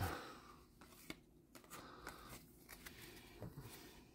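Faint handling of baseball trading cards: cards sliding and brushing against each other as they are sorted by hand, with a couple of light ticks.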